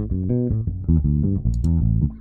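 Electric bass guitar playing a quick run of short single notes, a pentatonic lick moving up and down the neck.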